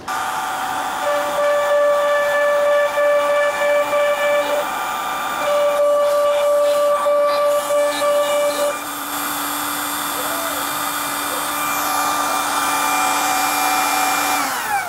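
Makita compact router mounted sideways on a CNC machine, starting up at once and running at speed with a steady high whine. Other whining tones come and go over it, then a lower tone holds through the second half.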